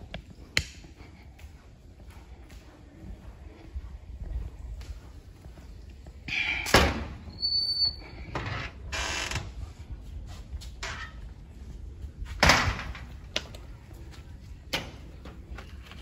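A door creaking and knocking as it is opened and shut, with scattered footsteps and handling clicks; the loudest knocks come a little past six seconds and about twelve and a half seconds in.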